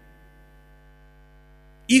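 Faint, steady electrical mains hum in a microphone and sound-system chain: a buzz made of many evenly spaced tones that holds without change. A man's voice cuts in at the very end.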